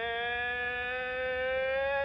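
A single long, buzzy held note, rising slightly in pitch, that cuts off sharply at the end.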